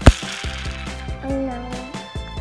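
A single sharp plastic click as a board-game spinner arrow is flicked round, followed by background music.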